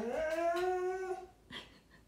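A dog giving one long whining howl that rises in pitch and is then held for just over a second, with a toy ball in its mouth. It is protesting at being told to drop its new toy before being let outside.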